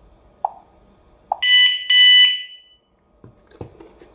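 Wireless solar-powered alarm siren giving two short, loud 'di di' beeps, the sign that it has paired successfully with the alarm panel. Two short, quieter blips come just before, as the pairing is confirmed on the panel, and plastic handling knocks follow near the end.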